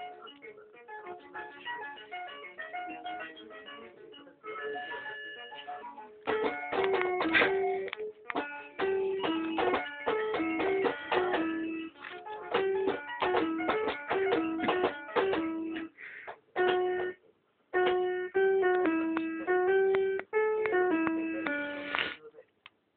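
Children's electronic learning toy playing simple, tinny synthesized melodies, note by note, through its small speaker. The tunes break off suddenly and start again several times, as its buttons are pressed.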